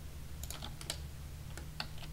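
Computer keyboard keys being pressed: a quick run of about eight light keystroke clicks, starting about half a second in, with a faint steady low hum behind them.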